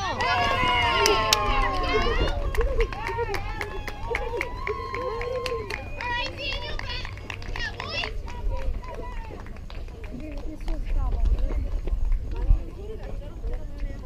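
Spectators and players yelling and cheering a hit, with hand clapping, loudest over the first eight seconds and then dying down. A low wind rumble sits on the microphone throughout, and one sharp knock comes near the end.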